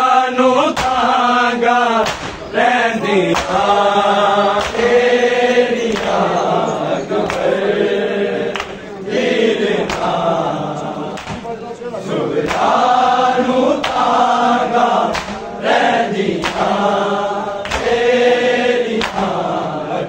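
A group of men chanting a Punjabi noha, a mourning lament, in long held sung lines, with hand-slaps of matam chest-beating landing about once a second.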